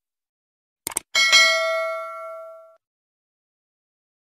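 Subscribe-button animation sound effect: a couple of quick mouse clicks about a second in, then a notification-bell ding that rings out and fades away over about a second and a half.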